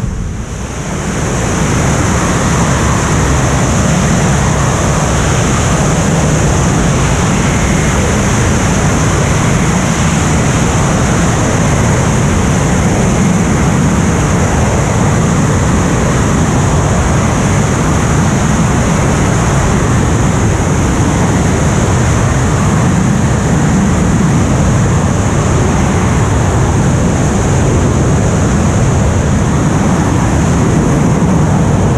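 Freefall wind rushing over a skydiver's helmet-camera microphone: a loud, steady roar that dips briefly just after the start.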